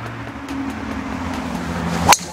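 A steady low engine hum from a motor vehicle, stepping up slightly in pitch about half a second in.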